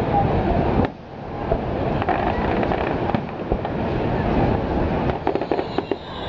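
Aerial fireworks shells bursting, with a quick run of sharp crackles near the end.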